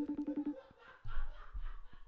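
FaceTime outgoing call ringing through a phone's speaker: a rapid trill of short beeps lasting under a second near the start, then a gap as the call waits to be answered.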